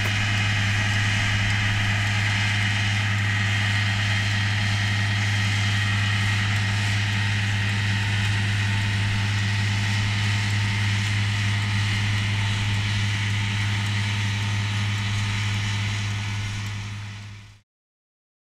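Tractor engine running steadily with a low, even hum as it pulls a slurry tanker spreading liquid manure. The sound fades out about a second before the end.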